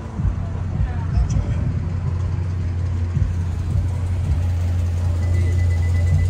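A car engine idling: a steady low rumble that grows stronger about halfway through.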